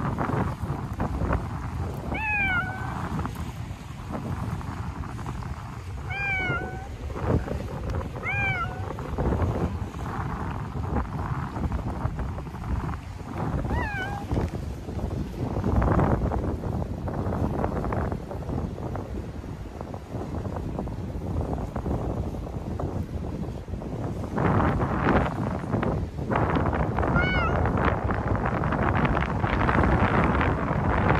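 A cat meowing five times, short calls that rise and fall in pitch, spread out with long gaps between them, over wind noise on the microphone that grows louder near the end.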